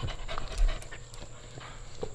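A dog panting, with scattered light clicks and a dull thump a little over half a second in.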